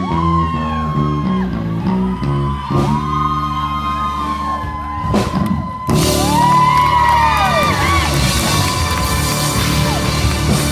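Live rock band playing an instrumental stretch, with long, sliding held notes over a stepping bass line. The audience starts cheering and whooping about six seconds in, under the band.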